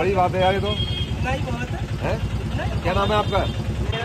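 Voices talking over the steady, evenly pulsing idle of a vehicle engine.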